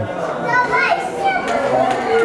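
Background chatter of several people talking in a large, echoing hall, with higher-pitched voices among them.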